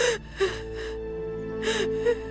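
A young woman crying, with several sharp gasping sobs, over soft background music that holds a sustained note.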